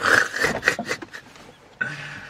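A man laughing in a few breathy bursts in the first second, then trailing off.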